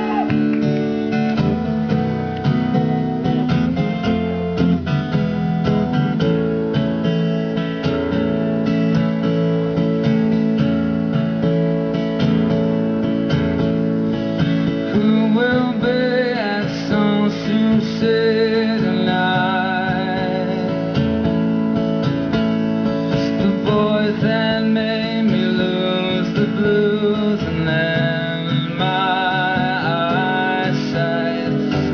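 Live solo acoustic guitar, strummed steadily as the song begins. A man's singing voice, with vibrato, comes in about halfway through.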